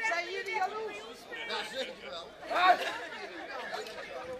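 Only speech: several people chatting among themselves, with no drums playing.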